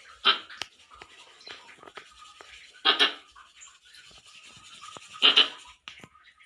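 Squirrel barking: three short, harsh barks about two and a half seconds apart, the second and third each a quick double, with faint ticks between them.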